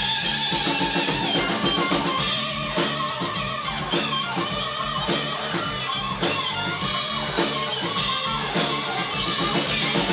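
Live rock band playing an instrumental passage: two electric guitars over a drum kit with steady kick and cymbals.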